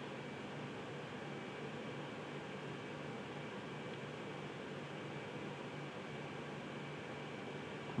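Steady background hiss with a faint low hum: room tone, with no distinct event.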